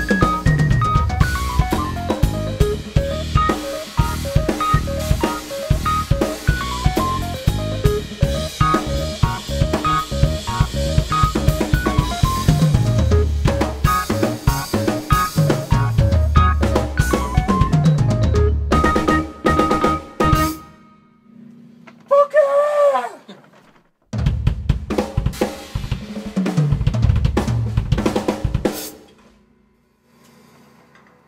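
DrumCraft acrylic drum kit with a Ludwig Blackrolite snare, played hard and busy with snare, bass drum and cymbals over pitched backing music with repeated notes. The playing breaks off about 20 seconds in, with a short gliding tone in the gap. It comes back for a last burst of drumming that stops shortly before the end.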